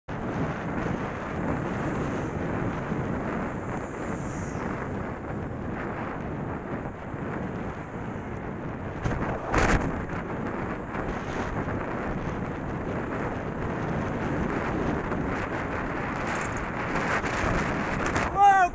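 Wind buffeting a cycling camera's microphone while riding in traffic, a steady rushing noise with road and traffic sound beneath it. One sharp knock about nine and a half seconds in.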